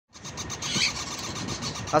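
Busy market background noise: a steady din of indistinct voices and traffic-like rumble.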